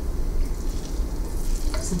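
Raw bacon strips sizzling as they are laid into hot bacon grease in an electric skillet, with a light click of metal tongs near the end.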